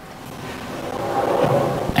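A man's strained groan of effort, building steadily louder over about two seconds, as he lifts a heavy boxed dry-cooler unit.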